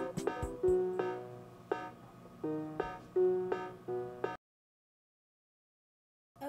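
A keyboard playing a short, halting run of notes and chords, each dying away, which cuts off suddenly into dead silence about four seconds in.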